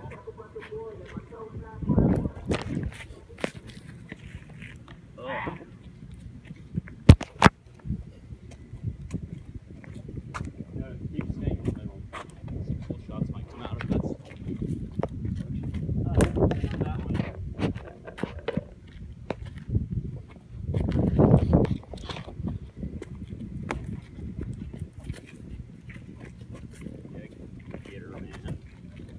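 Irregular low rumble of wind and handling on a handheld phone's microphone outdoors, with many small clicks, two sharp loud clicks about seven seconds in, and a few brief voices.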